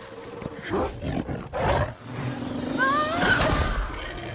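Giant-creature roars and growls from a monster-movie soundtrack. There are short loud bursts in the first two seconds, then a long growling roar that builds over the second half, with high rising cries over it about three seconds in.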